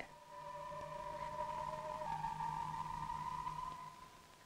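Electronic sci-fi laboratory-machine sound effect, the ultrasonic recorder switching on and running: several steady pure tones over a low hum, fading in at the start. About halfway through, the lower tone stops and the upper one drops slightly in pitch.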